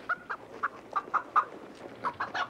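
Caged chickens clucking: about six short clucks in quick succession.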